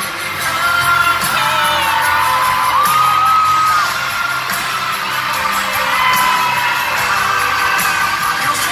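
Live pop-rock band playing in an arena, with a sung melody of long held, gliding notes over a steady beat and the audience's noise around it, recorded from within the crowd.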